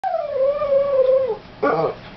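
A Boston terrier howling: one long howl that slides down in pitch, holds, and drops away, then a shorter, lower sound near the end.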